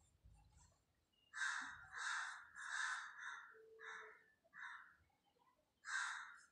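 A crow cawing repeatedly outside, a series of about six short caws, each a fraction of a second long, with short pauses between them.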